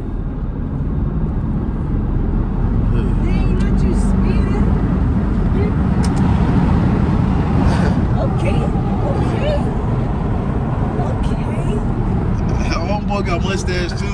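Steady road and engine noise inside a moving car's cabin, growing louder about a second in and holding.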